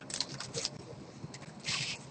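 Faint rustling and scraping over quiet room tone, with a short hiss near the end.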